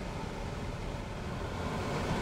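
Steady road and engine noise of a car being driven, heard from inside the cabin as an even low rumble.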